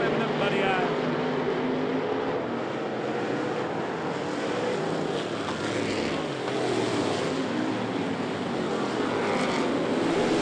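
Several dirt-track street stock race car engines running hard on the throttle, their pitch rising and falling as the pack races past.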